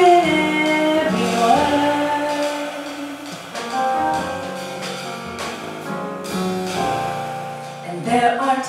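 Live jazz quartet: a woman singing held, wavering notes over piano, double bass and drums, growing softer near the end.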